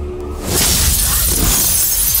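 Glass shattering with a sudden crash about half a second in, followed by a sustained spray of breaking glass, over low music.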